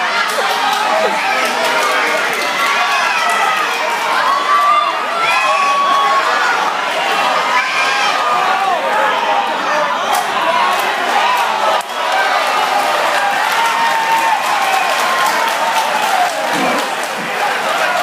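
Crowd of spectators shouting and cheering, many voices overlapping steadily.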